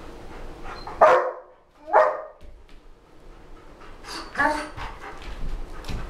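German Shepherd Dog barking twice, about a second apart, two loud short barks.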